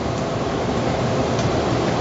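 Steady hiss and bubbling of stock added to a hot pan of saffron risotto, being brought back up to a simmer.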